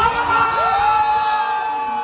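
Men shouting and cheering, with one voice gliding up into a long, steady cry held for over a second, as a goal goes in.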